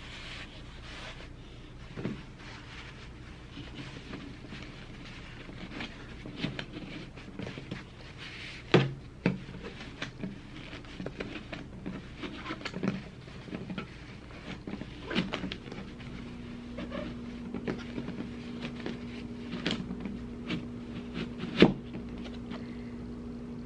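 A paper towel roll being stuffed into an empty plastic Clorox wipes canister: rustling paper with scattered knocks and clicks of the plastic tub, the sharpest about nine seconds in and again just before the end. A steady low hum sets in about two-thirds of the way through.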